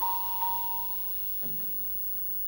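A concert band's sustained chord cuts off at the start. A single high mallet-percussion note is left ringing, struck again about half a second in, and fades with a high shimmer within about a second. A faint knock follows.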